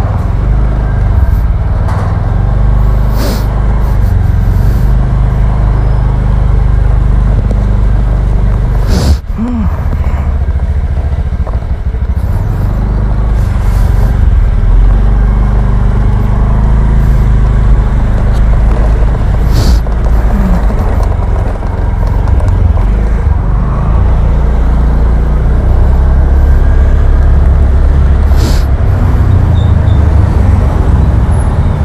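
A small motor scooter being ridden: its engine runs steadily under a heavy low rumble of wind and road noise, and a few short knocks from bumps in the lane come through, one about a third of the way in.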